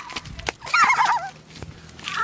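A child's high, wavering vocal squeal lasting under a second, starting about half a second in, with a couple of sharp knocks around it.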